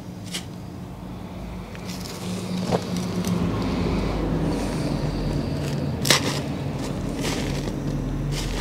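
Hand trowel scraping and digging into soil, with a few sharp scrapes and clicks as the blade hits earth and weed fabric, the loudest about six seconds in. Under it a steady low engine-like hum swells from about two seconds in and carries on.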